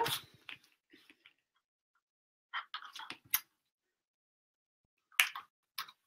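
Plastic sewing clips snapping onto the edges of layered fabric, with soft fabric-handling rustles: scattered small clicks in a few groups, the sharpest about three and a half seconds in.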